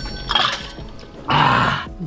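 Background music with a man's short, breathy grunt about a second and a half in.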